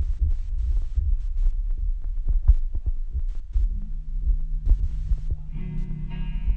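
Live rock band playing in a small room, picked up by a phone: a heavy, boomy low end with a run of drum hits. A held bass note comes in about four seconds in, and guitar chords join near the end.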